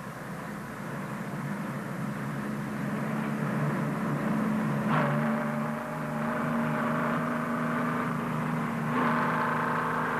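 A loaded logging truck's engine runs as the truck comes nearer, growing steadily louder. Its note changes abruptly about halfway through and again near the end.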